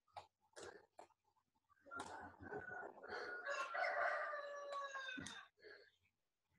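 A few short clicks in the first second, then one long animal call with several harmonics, lasting about three seconds from about two seconds in.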